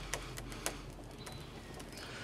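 Faint forest ambience under a tense pause: a steady low hum with a light hiss, a few soft clicks in the first second, and a faint high chirp about a second in.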